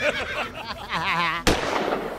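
Voices for the first second or so, then, about one and a half seconds in, a sudden bang with a short hissing tail: a video-editing transition sound effect as the show's logo comes up.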